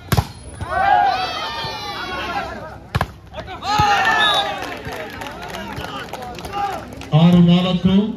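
Volleyball being struck: a sharp smack of a spike at the net at the very start and another sharp ball hit about three seconds in, each followed by a crowd shouting and cheering. A man's loud voice cuts in near the end.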